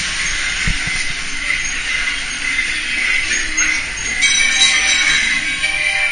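Steady rush of water along a log-flume channel, with the ride's show music playing over it; the music's tones come in more clearly about four seconds in.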